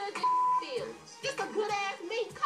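A woman's angry speech, interrupted early on by a short, steady, single-pitched beep: a TV censor bleep over a swear word. Background music plays underneath.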